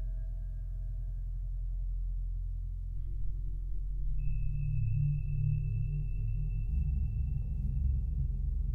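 Electronic music from a Mutable Instruments modular system and a Behringer 2500 synthesizer: a deep, steady bass drone whose low notes shift slowly and grow louder, with a thin, steady high tone coming in about four seconds in.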